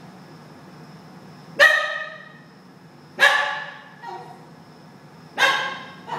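Basenji dog giving three short, sharp barks, about two seconds apart, with a fainter yelp between the second and third.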